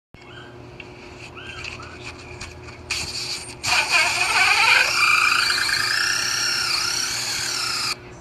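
Cordless drill spinning a hole saw into a block of wood, loud from about three seconds in, its motor pitch dropping as the saw bites and then wavering under load; it cuts off abruptly near the end.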